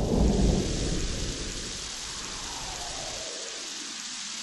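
Thunder rumbling and dying away over a steady hiss of rain, a thunderstorm sound effect.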